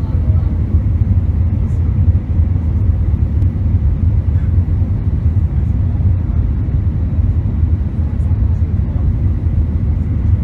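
Steady low cabin roar of an Airbus A319 in flight, heard from a window seat over the wing: engine and airflow noise through the fuselage, unchanging throughout.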